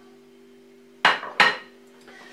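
Two quick clinks of a dish being set down and shifted on a kitchen worktop, about a third of a second apart, a second in, over a faint steady hum.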